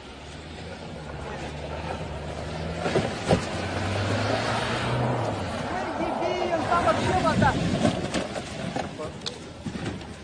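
A van's engine running as it drives across lake ice, its pitch rising briefly about four seconds in. People's voices follow in the second half.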